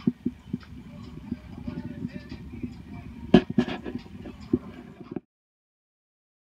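Hand caulking gun being squeezed repeatedly to dot blobs of adhesive, its trigger and plunger rod clicking, one click much louder about three seconds in, over a low background rumble. The sound stops abruptly about five seconds in.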